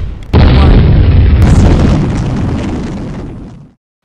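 Boom sound effect of an animated logo intro: a sudden loud hit about a third of a second in that fades away over about three seconds into silence.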